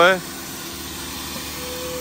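RIDGID wet/dry shop vacuum running steadily, a constant motor hum.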